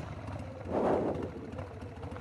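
A 1999 Harley-Davidson Sportster 1200's Evolution V-twin engine running steadily and fairly quietly at low speed, with a short rush of noise about a second in.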